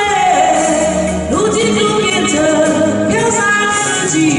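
A woman singing a Chinese-language song into a handheld microphone over an instrumental backing track, holding long notes with a falling phrase at the start.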